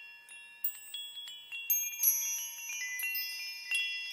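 Many high, bell-like chime tones struck one after another at uneven moments, each ringing on and overlapping the others: a shimmering chime sound effect laid over a title card.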